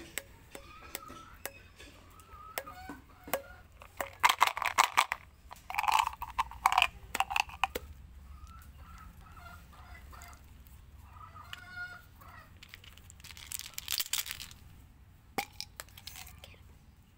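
Small hard candies clicking and rattling as they are handled, with several short bursts of crinkling and tearing from plastic candy wrappers.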